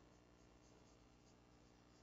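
Very faint strokes of a marker pen on a whiteboard as a word is written, barely above room tone.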